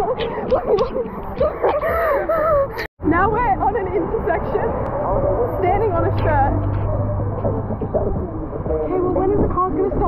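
Young women's voices shouting and gasping in pain from running barefoot over hot concrete, with a low steady rumble of road traffic for a few seconds after the middle.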